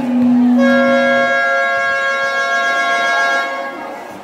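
Game buzzer or horn sounding one steady, unwavering tone for about three seconds, starting about half a second in. A lower held tone fades out under it in the first second and a half.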